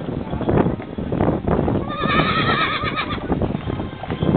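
A horse whinnying once near the middle, a quavering call about a second long, over the clip-clop of hooves on a paved street.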